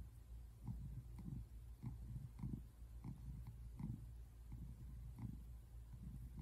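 Brown tabby American shorthair cat purring, a low rumble that swells and fades about one and a half times a second with its breathing.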